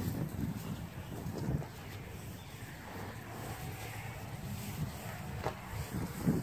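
Wind rumbling on the microphone outdoors, with faint footsteps on grass as the camera is carried along, and a small click about five and a half seconds in.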